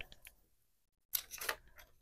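A few faint, short clicks and rustles a little over a second in: small craft items being handled on a tabletop, such as a coaster, paper, a plastic sleeve and a plastic tape runner.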